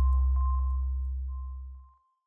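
The tail of an electronic sound-logo sting fading out. A deep bass tone and a thin, steady high ping ring down together, with a few faint ticks, and die away just before the end.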